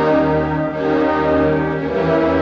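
Orchestra playing held, sustained chords with a deep bass line.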